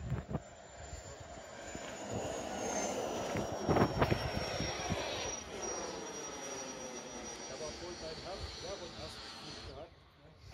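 A radio-controlled model aircraft's motor whining as it climbs away: a thin, high whine that slowly falls in pitch over a rushing noise. It swells over the first few seconds, then fades, and cuts off just before the end.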